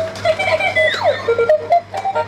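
Dancing monkey toy playing its electronic tune from its built-in speaker. A held note gives way to a downward-swooping sound effect about a second in, then a run of short beeping notes.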